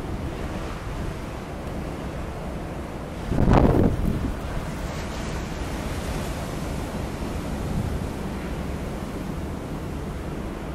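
Surf breaking on a pebble storm beach, with wind buffeting the microphone. One louder wave surge comes about three and a half seconds in.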